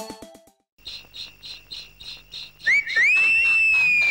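A loud whistle, two short rising chirps then one long held note that sags slowly in pitch, opening the song, over a faint even pulsing of about four beats a second. The tail of a music jingle fades out just before.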